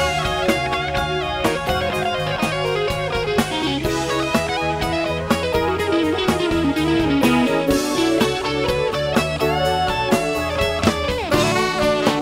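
Live electric guitar solo with bent notes, over electric bass and drum kit backing.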